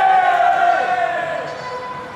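A voice holding one long call that slowly falls in pitch over about a second, over crowd noise; then it fades.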